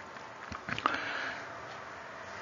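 A few faint clicks, then a short sniff or breath drawn in through the nose, about a second in.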